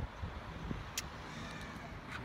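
Quiet steady outdoor background noise with a low rumble, broken by one sharp click about halfway through.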